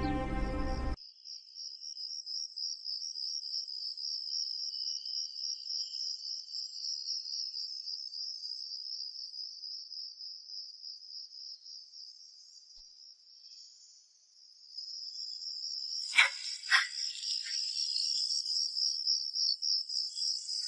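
Crickets trilling steadily in a high, fast-pulsing chirr, fading out briefly a little past the middle and then coming back. Two short sharp sounds break in about three-quarters of the way through.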